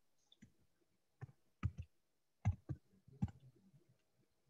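Computer keyboard keys clicking faintly as a couple of words are typed: about ten irregular keystrokes, some in quick pairs.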